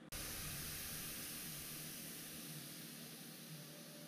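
A steady, even hiss that starts abruptly just after the start and slowly fades a little.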